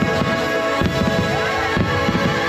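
Show music played over loudspeakers, with a run of deep thumps that start suddenly and repeat about twice a second as fireworks are launched and burst.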